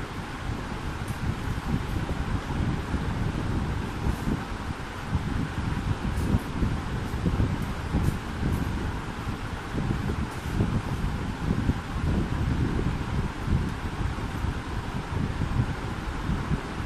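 Steady, fluctuating wind rumble on the microphone, with a few faint ticks.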